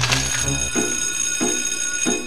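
A sustained, bright ringing tone like a bell, held steady, over cartoon background music with low bass notes.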